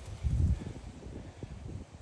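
Footsteps and clothing brushing through dry grass and brush, as scattered crackles and ticks that die away near the end. A low rumble on the microphone about half a second in.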